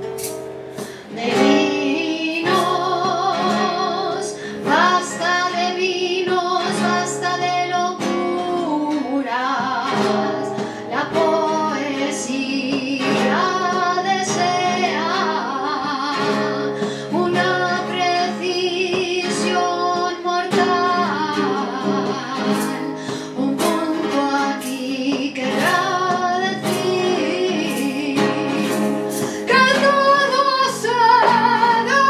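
A woman singing a poem set to flamenco-style song, her voice wavering with vibrato, accompanied by a man on acoustic guitar. The guitar plays alone for the first second or so before the voice comes in.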